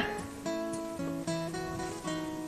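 Background acoustic guitar music: plucked notes held and changing every half second or so.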